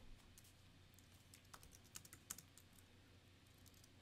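A few faint computer keyboard keystrokes, irregularly spaced, mostly in the first half, over quiet room tone.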